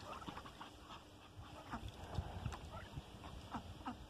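Ducks making short, soft calls several times, faint and spread out.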